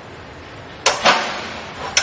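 Sharp knocks from a layback wheel caster being handled: two clacks about a quarter second apart about a second in, then a third near the end.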